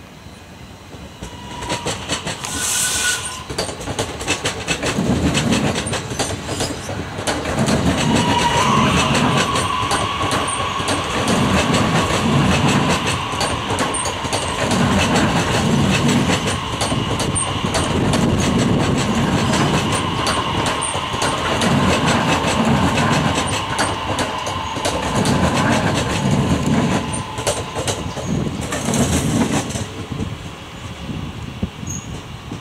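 High Capacity Metro Train (HCMT) electric multiple unit passing close by, getting louder over the first few seconds. Its wheels clatter over rail joints in a steady repeating rhythm, and a steady high whine sets in about eight seconds in.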